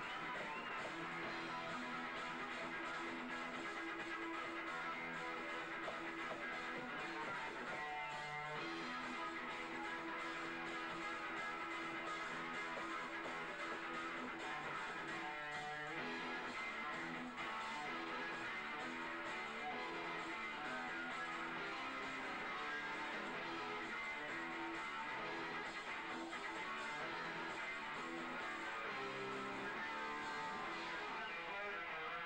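Hard rock band playing live, an electric guitar riff repeating over bass and drums in an instrumental stretch with no singing. Two brief swooping slides come about eight and sixteen seconds in.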